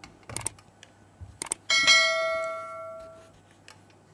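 Subscribe-button sound effect: two pairs of sharp clicks, then a small bell rings once and fades away over about a second and a half.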